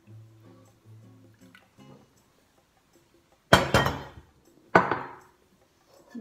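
Faint soft tones, then two loud knocks with a short ring, a little over a second apart, in the second half: a stainless steel kettle and a ceramic mug being set down on a kitchen counter.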